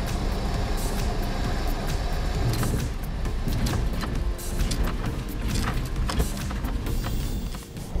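Cessna 172 engine and propeller running steadily, heard from inside the cabin as the plane rolls on the grass strip after landing, with background music over it.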